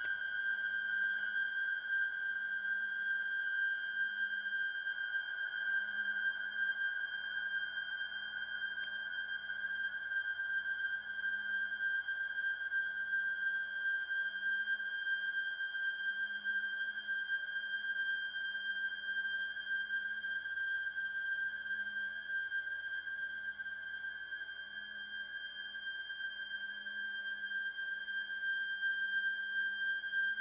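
Ambient electric guitar drone sustained through effects pedals: one steady, held high tone with overtones above it, over a faint low note that pulses slowly.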